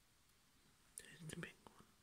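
Near silence broken about a second in by a brief, faint whisper lasting under a second.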